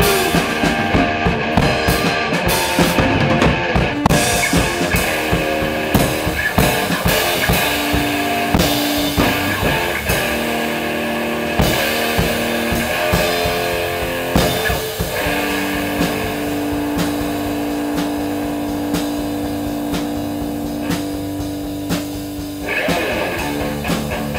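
Live improvised rock jam with a drum kit and an electric guitar playing together, the drums hitting steadily throughout. In the second half a single note is held for several seconds, and the music shifts just before the end.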